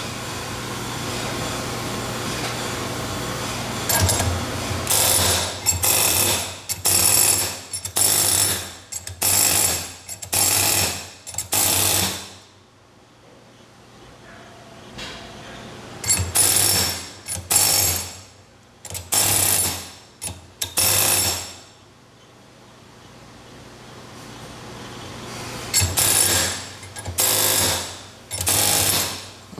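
Pneumatic air hammer rattling against a cast-iron small-block Chevy camshaft in bursts about a second long and a second apart, in three runs with quieter pauses between. The hammer is peening the cam's low side to straighten a bend of about 20 thousandths. A steady hum fills the first four seconds before the first burst.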